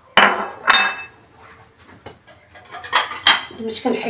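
Ceramic plates and metal utensils clinking as dishes are handled and set down. There are sharp, ringing clinks: two near the start about half a second apart, and two more about three seconds in.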